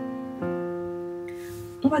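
Piano played with the left hand alone: a low note rings on from just before, and another is struck about half a second in and left to fade.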